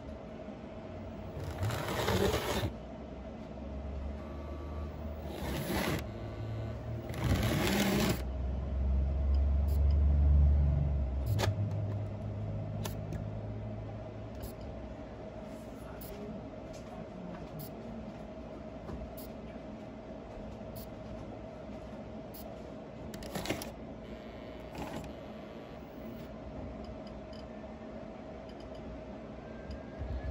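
N scale model Conrail diesel locomotive running on the layout track: a steady faint whine with a low rumble that swells for several seconds and falls away about eleven seconds in. Short bursts of noise come about two, six and eight seconds in, and twice more near the end.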